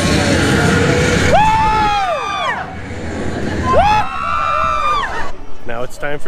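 Riders screaming on a drop-tower ride: a noisy burst of mixed screams, then two long whooping screams that rise and fall, a couple of seconds apart.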